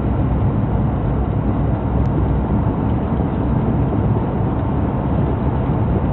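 Steady road and engine noise heard inside the cabin of a moving car, a deep, even rush with no breaks.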